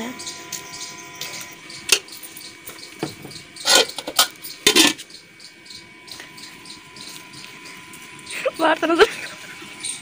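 Metal serving spoon scraping and knocking against a steel pot while a thick dessert is scooped out, with a click about two seconds in and two short scrapes around four to five seconds in. A brief voice comes near the end.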